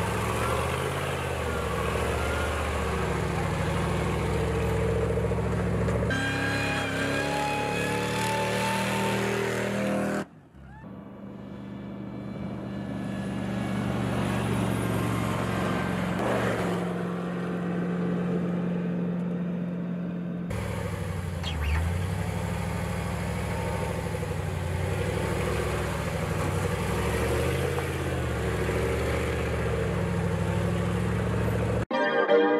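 Jeep M-715 Five-Quarter's engine running at low speed while crawling over rock, its pitch stepping up and down with the throttle. The level drops sharply about a third of the way in, then builds back up.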